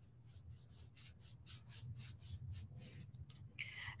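Paintbrush bristles brushing paint onto a flat wooden cutout: faint, quick back-and-forth strokes, about four or five a second.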